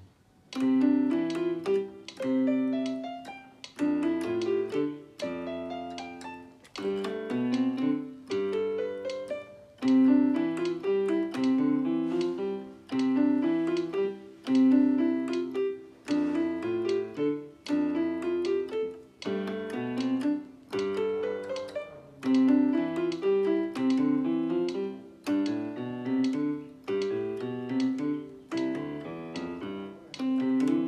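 Piano fingering exercise played on a keyboard with both hands: quick stepwise runs of notes up and down, in short patterns repeated over and over.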